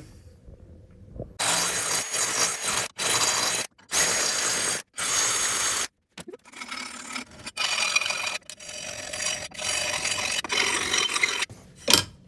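Hand file rasping back and forth in the bolt holes of a steel gearbox mount bracket, elongating the holes: a run of separate strokes about a second long, with a short pause about six seconds in.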